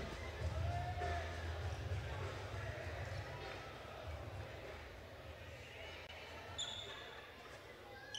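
Faint ambience of a large indoor jai-alai fronton between points: a low rumble of the hall with faint voices, and a brief high squeak a little after six seconds.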